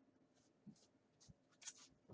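Near silence with a few faint, short brushing and rustling sounds from the plush fabric of a mascot costume head being adjusted by hand.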